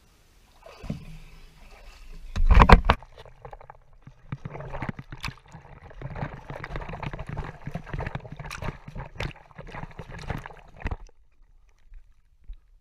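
Water splashing and sloshing right at an action camera held at the surface by a swimmer moving through the water. There is a loud splash about two and a half seconds in, then continuous choppy splashing that stops just before the end.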